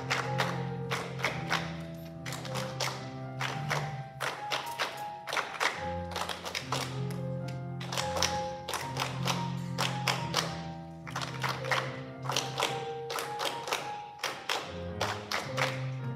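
Youth choir performing with sustained sung chords over a busy, uneven rhythm of sharp percussive hits.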